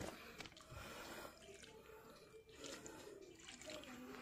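Diluted liquid organic fertilizer poured from a bucket onto soil around young plants: a faint, steady trickle of liquid soaking into the ground.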